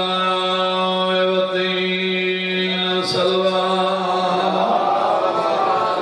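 A man's voice chanting a religious recitation into a microphone, holding one long steady note for about four and a half seconds before moving on into shifting, speech-like phrases. A short click sounds about three seconds in.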